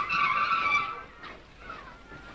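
Bicycle brakes squealing as the bike pulls up: one shrill, steady squeal that starts suddenly and dies away after about a second.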